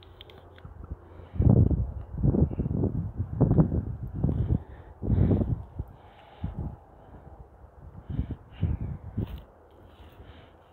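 A bird giving harsh, crow-like caws: a run of about seven, then after a pause three more.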